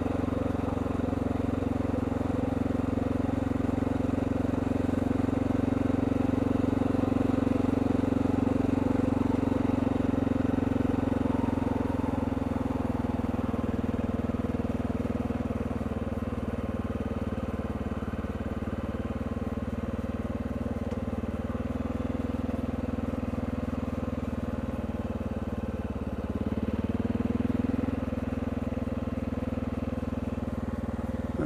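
Motorcycle engine running steadily at low speed as the bike rolls slowly along, easing off a little partway through and picking up briefly near the end.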